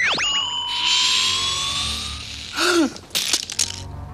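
Film sound effect of a heat-vision beam striking a knife blade: a sudden zap that settles into a steady, high electronic tone over a hiss for about two seconds, then stops. Near the end come a short falling cry-like tone and a quick run of sharp cracks.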